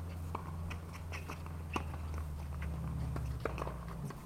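Outdoor tennis court sounds between points: scattered light taps and clicks at irregular intervals over a steady low rumble.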